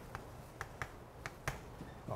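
Chalk tapping on a blackboard while writing a short coordinate label and marking a point: a series of about six sharp, separate clicks.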